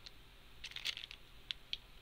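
Small clear plastic zip bag crinkling faintly as it is handled in the fingers: a few light crinkles about half a second in, then two single ticks near the end.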